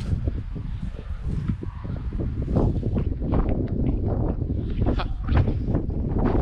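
Wind buffeting the microphone in a steady low rumble, with scattered scuffs and rustles from about two and a half seconds in.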